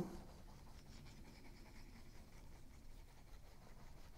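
Faint scratching of a liquid glue bottle's fine nozzle drawn across cardstock as glue is laid on.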